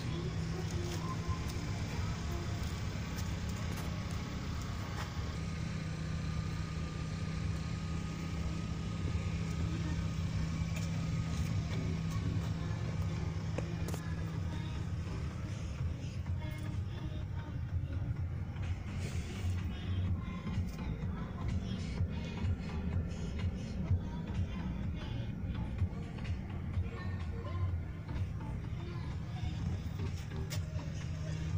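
Steady low hum inside a car's cabin with faint music underneath. Rustling and light knocks from handling grow in the second half.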